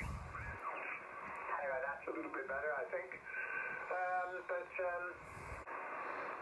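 Yaesu FT-991A receiver audio on the 80-metre band in lower sideband while being tuned down the band: short snatches of single-sideband voices come and go over a low background hiss. The band noise is down to about S2 with the local mains power off.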